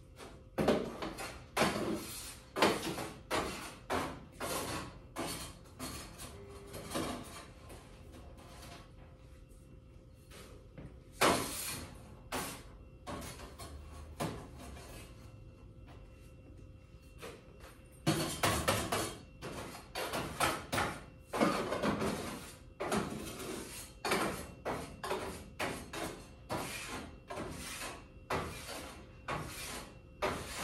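Irregular knocks, clicks and rustling from small objects being handled, set down and moved around at a countertop, in busy clusters with short lulls.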